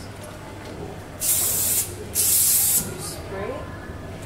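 Two short blasts of hairspray, each lasting about half a second with a brief gap between, sprayed onto a section of hair.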